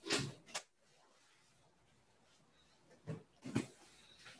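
Mostly quiet room tone over a call microphone, broken by a few faint short clicks and rustles: one right at the start, one about half a second in, and two about three seconds in.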